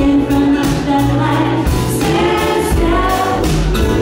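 A live band plays a song: a female lead voice sings with a second voice in harmony, over acoustic guitar, upright bass and drums.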